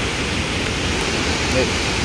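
Steady rushing of water discharging through a dam's partially open spillway gates and churning white in the basin below.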